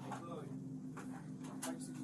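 A steady low electrical-sounding hum under faint voices, with a couple of short clicks near the end.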